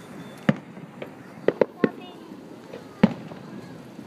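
Aerial fireworks shells bursting, five sharp bangs: one about half a second in, a quick cluster of three around a second and a half, and one about three seconds in, with voices murmuring in the background.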